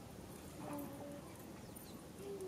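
Faint background with a single soft, low, steady-pitched animal call about half a second long, a little over half a second in.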